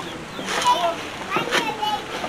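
Gloved hand digging into moist black soldier fly larvae feed in a cut-open plastic jerrycan, a wet rustling and scraping, with high-pitched voices talking in the background.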